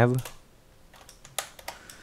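A few scattered keystrokes on a computer keyboard, the clearest about one and a half seconds in, as text is edited in a code editor.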